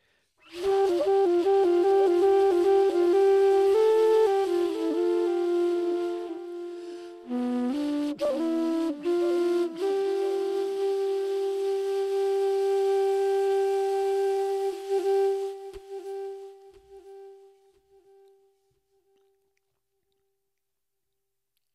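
Homemade flute cut from a Japanese knotweed stem, played with a breathy tone: a run of quick changing notes, a brief break, a few lower notes, then one long held note that fades away well before the end.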